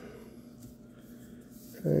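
Quiet room tone with a faint steady hum, in a brief pause between words; a man's voice starts again just at the end.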